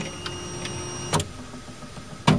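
Dremel Digilab 3D45 3D printer running with a steady hum and faint high whining tones as it begins its filament-change routine. The whine stops about a second in with a sharp click.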